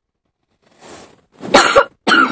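A person coughing, a few harsh coughs in quick succession starting about one and a half seconds in.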